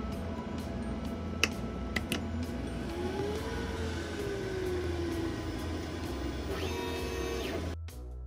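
Glowforge laser cutter running with a steady fan rush, two sharp clicks about a second and a half and two seconds in, and a whine that rises and then slowly falls in pitch midway, over background music.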